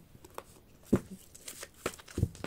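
Deck of tarot cards being handled and picked up: a few soft clicks and taps of card stock, the loudest about a second in.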